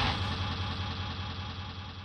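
Car engine running with a steady low hum and faint road hiss, slowly fading away.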